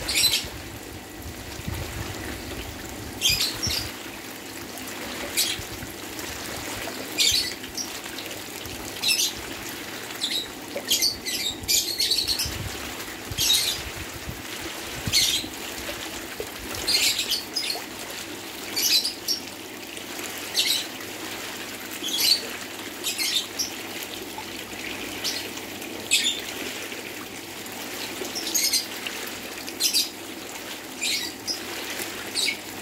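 Water splashing and churning from a dense mass of catfish thrashing at the surface of a crowded pond, with short, high, splashy bursts every second or two over a steady wash of water.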